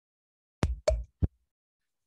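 Three short knocks or bumps, about a third of a second apart, picked up by a participant's microphone on a video call.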